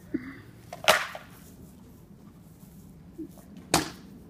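Two sharp cracks of rattan sword blows landing during armoured sparring, about a second in and again near the end, the first with a short ringing tail.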